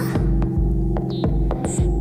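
Instrumental backing of a slow electronic song in a gap between sung lines: a held tone over a low, pulsing bass, with light clicks.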